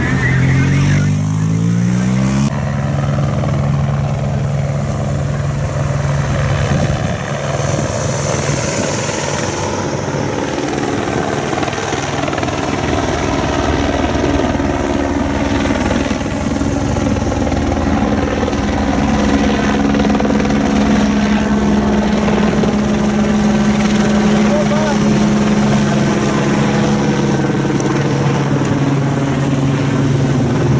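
Steady motor drone from the vehicles accompanying a passing bicycle race, with a rising pitch in the first two seconds as one goes by, then a held low hum.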